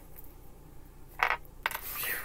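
Tarot cards being gathered up from a tabletop: a short rasp of cards sliding together a little over a second in, then a sharp tap of the cards against the table.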